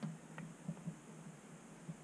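Faint handling sounds of clay sculpting: a wire-loop texturing tool worked over a clay feather on a wooden board, giving a few soft low knocks and one light tick about half a second in.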